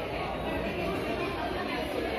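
Crowd chatter: many people talking over one another at once, a steady hubbub of voices with no single voice standing out.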